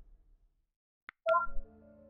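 The last of a music track fading out into near silence, then a single click about a second in and a short electronic tone, followed by a faint held tone.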